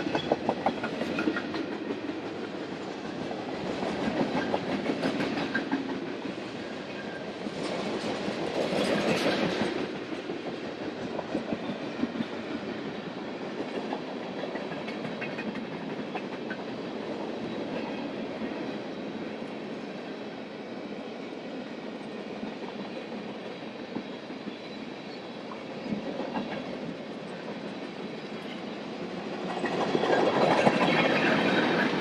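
Freight cars rolling past at close range: a steady rumble of steel wheels on rail with a rapid clickety-clack. It swells louder about four and nine seconds in and again near the end.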